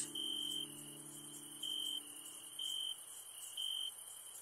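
Cricket chirping in a night-time ambience: short, high, steady-pitched chirps repeating about once a second, faint. A low held music note fades away under them in the first three seconds.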